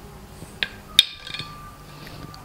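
A plastic measuring spoon knocking against a glass mixing bowl: a soft tap, then a sharp clink about a second in that rings briefly.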